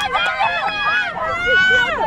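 Several high-pitched voices shouting and cheering over one another from the sideline as a rugby player breaks away with the ball, with one long held yell near the end.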